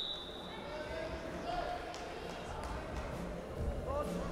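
The tail of a referee's whistle blast rings out and fades in the first half second. After it comes the low noise of a large indoor hall, with faint distant voices and a few soft low thumps.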